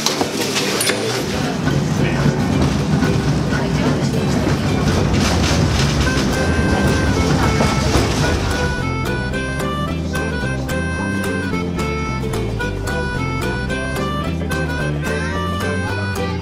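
Instrumental string music with a steady beat fades in over the murmur of passengers talking and the carriage's running noise, and takes over about halfway through.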